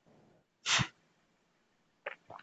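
A single short, sharp burst of breath noise from a person, about two-thirds of a second in, preceded by a faint intake of breath.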